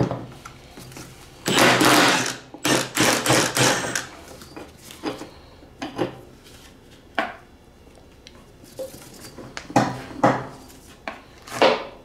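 Cordless impact wrench hammering the 22 mm nut off a mower-deck spindle pulley, in two short bursts about a second apart early on. Scattered knocks and clatters of the socket and metal parts being handled follow.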